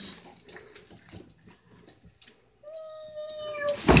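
A single long, steady meow lasting about a second, followed near the end by a loud thud as a child flops face-down onto a mattress.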